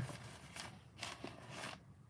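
Faint rustling and a few soft handling noises, clothing brushing close to the microphone as a person reaches up to reposition a light.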